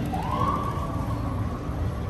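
A single tone that rises in pitch over about half a second, then levels off and holds for about a second before fading, over a steady low rumble of outdoor background noise.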